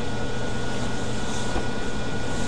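Steady droning background noise: a low hum with a faint thin whine and even hiss, unchanging throughout.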